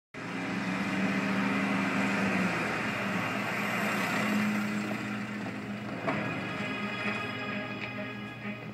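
Background music score over a vehicle engine running as a van drives in and stops, with a short knock about six seconds in. The sound comes through a TV speaker, recorded off the screen.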